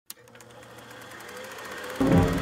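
A film projector's mechanism running: one click, then a rapid, even clatter over a low hum, growing louder.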